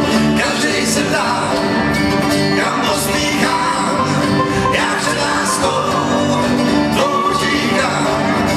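A bluegrass band playing live, with banjo, mandolin and acoustic guitars, and men singing.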